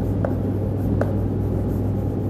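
Chalk writing on a chalkboard, scratching out letters with a couple of short clicks as the chalk strikes the board. A steady low hum runs underneath.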